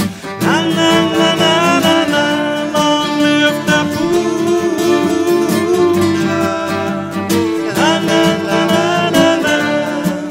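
Irish folk band playing an instrumental passage. A whistle and fiddle carry an ornamented tune with slides over sustained button-accordion chords and plucked strings.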